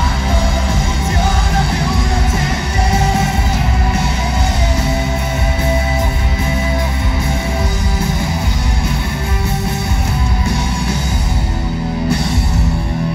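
Live rock band playing loud: distorted electric guitars with held notes over bass and drums, heard from among the audience in a hall.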